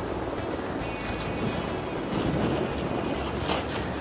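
Wind on the microphone: a steady rushing noise with no distinct events.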